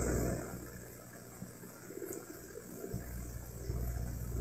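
Faint low background rumble in a pause between spoken phrases. It drops away for a couple of seconds in the middle and then returns.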